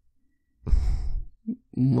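A man sighing close to the microphone, one breathy exhale lasting under a second, before he starts speaking again near the end.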